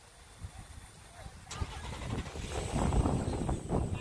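A car engine running, growing louder from about a second and a half in, just after a short click.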